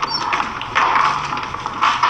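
Bustle of several people moving about a room: an irregular jumble of footsteps, knocks and scrapes.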